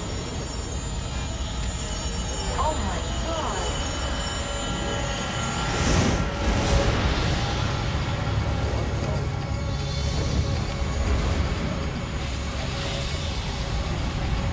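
Explosion of a propane storage depot: a deep, continuous rumble with a louder blast about six seconds in as a fireball goes up, under dark, tense music.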